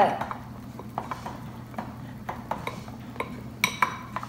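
Utensils stirring a thick, creamy mixture in glass bowls, with light scraping and clicking against the glass. Near the end, one brighter ringing clink of a utensil striking a glass bowl.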